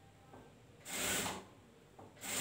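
Industrial sewing machine running in one short burst of stitching, about half a second long, about a second in.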